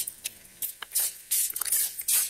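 A stiff paper instruction card being handled close to the microphone: several short, scratchy rustles.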